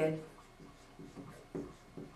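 Marker writing a word on a whiteboard: a few short, faint strokes.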